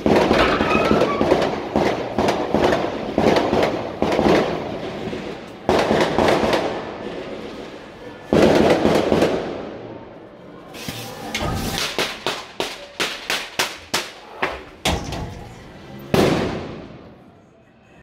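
Fireworks going off: dense crackling and bangs for the first few seconds, two louder booms, then a quick run of sharp bangs, about two to three a second, and a last bang near the end, each one echoing.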